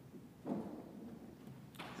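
A single soft thump about half a second in, against faint room tone.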